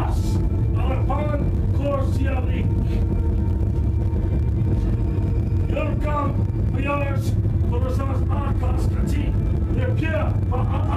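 A steady low rumble runs throughout, with indistinct voices talking through it in short spells.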